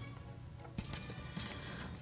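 Quiet background music, with a couple of faint clicks of clear plastic puzzle pieces being handled, about a second in and again shortly after.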